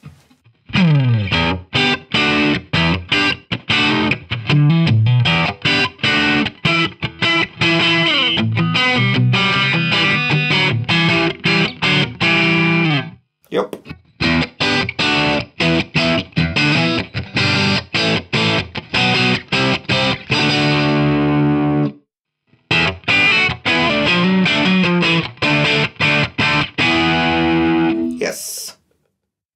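G&L Tribute Legacy electric guitar on its neck (front) single-coil pickup, played through a Marshall JCM 800 amp simulation with overdriven distortion. It plays sharply stopped, rhythmic chords and riffs, with two short breaks, one about halfway through and one about 22 seconds in.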